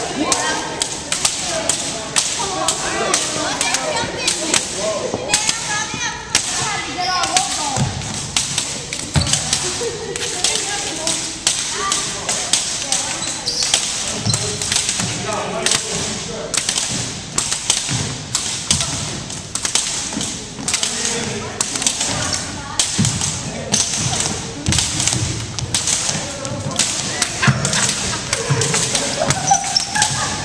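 Irregular slaps and thumps, several a second, of long jump ropes and feet striking a hardwood gym floor, with background voices.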